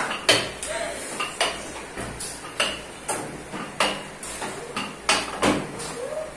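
Sharp knocks and clicks of a rolling pin and tools on a stainless-steel worktable while fondant is rolled out and handled, about one or two a second.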